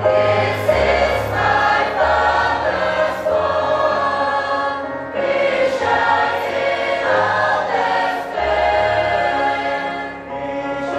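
Mixed youth choir of boys and girls singing a sacred song together in phrases of a few seconds, over low sustained accompanying bass notes.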